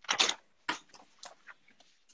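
A few short clicks and knocks of pens and drawing materials being handled, the loudest just after the start.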